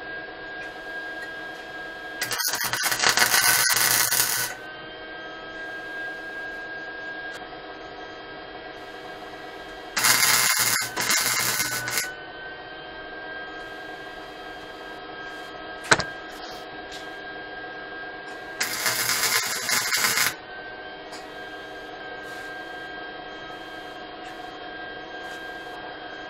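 MIG welder arc crackling on steel tubing in three short welds of about two seconds each, with a steady hum between them. A single sharp click comes about two-thirds of the way in.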